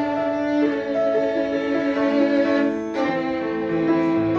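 Violin and piano duo: a violin bowing a slow melody in long held notes, changing pitch every second or two, over piano accompaniment.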